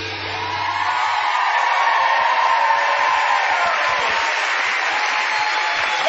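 Dance music with a steady bass ending about a second in, giving way to a studio audience applauding and cheering, which grows louder.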